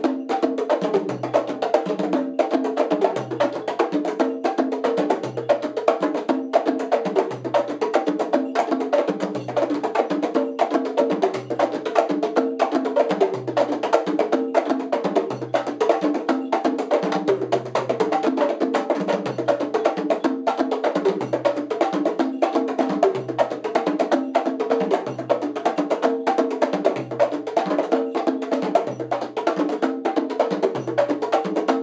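Hand-drum duet: a pair of congas and a floro drum rig played together in a fast, dense rhythm. A deep bass stroke falls about every two seconds.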